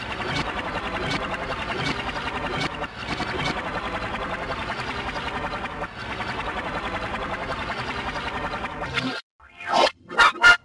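Heavily processed, layered remix audio of the kind used in 'Csupo' logo-effect videos: a dense, even wash of sound with a fast steady flutter. It cuts out suddenly near the end, followed by a brief burst.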